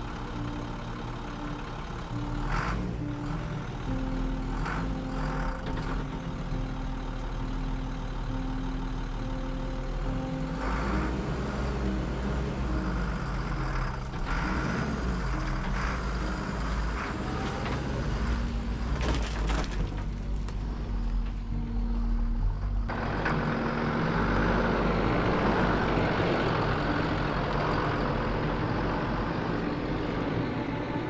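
A school bus engine running as the bus pulls away, a steady low rumble that turns abruptly louder and noisier about two-thirds of the way through.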